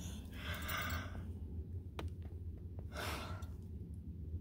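A woman breathing out heavily twice, once in the first second and again about three seconds in, over the steady low rumble of a car cabin.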